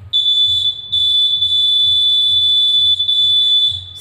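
Electronic buzzer on a homemade ultrasonic-sensor phone stand sounding one steady high-pitched tone: its warning that someone has come closer than the safe viewing distance. The tone breaks off briefly just before a second in, then holds until near the end.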